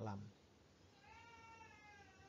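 A faint, drawn-out, high-pitched animal call, about a second long, starting about a second in. It rises slightly at first and then holds a steady pitch.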